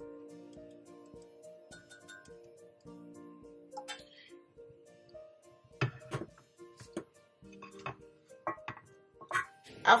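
Soft background music with held notes. Over it, from about six seconds in, a run of light clinks from a spoon stirring tea in a glass mug.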